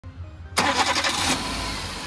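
Chevrolet Beat's four-cylinder petrol engine starting: it catches suddenly about half a second in, runs up for under a second, then settles toward a steady idle.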